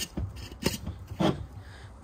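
A few short knocks and light rubbing from handling a glass jar and a rag on a table, over a low rumble of wind on the microphone.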